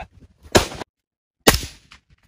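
Two suppressed rifle shots about a second apart, each a sharp crack with a short dying tail. The sound drops out completely between them.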